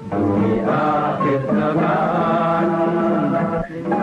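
A solo voice chanting in long, held notes that slide in pitch, breaking off briefly near the end.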